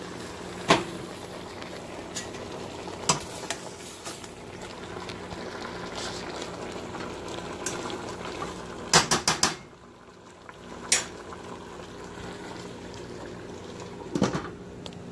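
Pot of vegetables and chicken in broth boiling hard on a gas burner, while a metal spoon stirs it and clinks against the stainless steel pot: once about a second in, again near three seconds, a quick run of four clinks around nine seconds, and once more at eleven.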